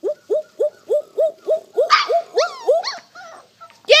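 Labrador puppies yipping and whimpering in a quick, regular series of short rising cries, about three a second, with a few higher, drawn-out cries about halfway through.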